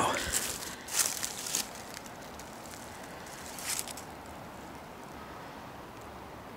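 Footsteps and rustling through brush and woody debris on the forest floor: a few short bursts in the first two seconds and another near four seconds, then only a faint steady background hiss.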